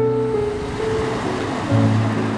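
Slow, soft piano music with held notes, over a steady hiss of background noise that comes in at the start.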